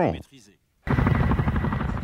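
A military CH-47 Chinook tandem-rotor helicopter flying low overhead. It cuts in abruptly just under a second in, with the fast, steady chop of its rotor blades.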